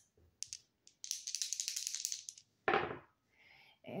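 A small die rolled by hand across a cloth-covered tabletop: a few light clicks, then about a second of quick, high rattling clatter as it tumbles, and a brief louder burst of sound near the end.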